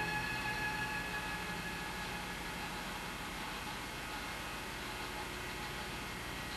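Background music with held tones fading out over the first couple of seconds, leaving a steady hiss over a low hum.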